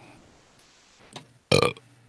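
A man's brief vocal sound about one and a half seconds in, after a quiet pause in talk.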